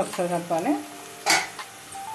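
Chopped onions and green chillies sizzling as they fry in hot oil in a pot, with one brief loud clatter about a second and a half in. Soft background music runs under it.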